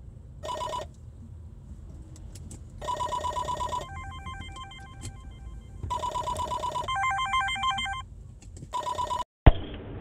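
A phone ringtone: a ringing burst about every three seconds, with a pitched beeping pattern between the later rings, over low road rumble in a car cabin. It cuts off suddenly near the end as the call is answered.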